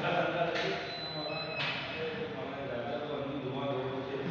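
Indistinct men's voices talking in the background, with a brief high steady tone about a second in.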